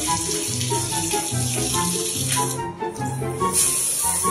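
Background music with a steady beat over water running from a bathtub spout, a hiss that breaks off briefly near the end and then comes back.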